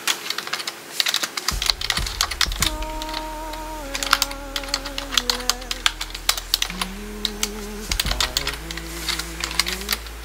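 Rapid, irregular clicking like typing on a computer keyboard. Over it, from about three seconds in, a wavering tune of held notes steps downward, then climbs again near the end.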